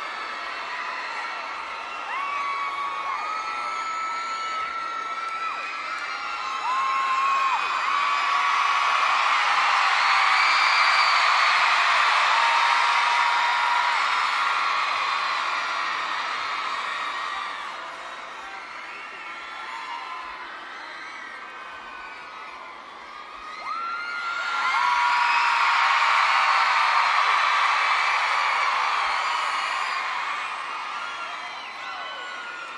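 Concert audience cheering and screaming, with many shrill held screams above the crowd noise. It swells loud about a quarter of the way in, dies down, then swells again near the end.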